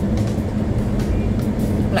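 Steady low road and engine drone inside a moving car's cabin while driving.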